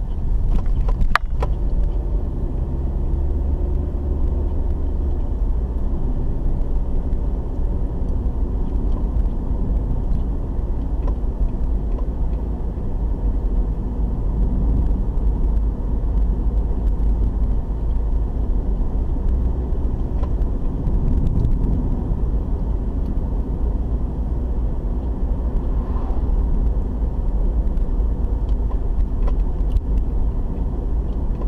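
A car driving, heard from inside the cabin: a steady low rumble of engine and tyre road noise, with a single click about a second in.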